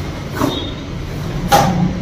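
Two brief swishes, about half a second in and about a second and a half in, the second louder, as a karate knife-hand block is performed in a cotton gi, over a steady low background hum.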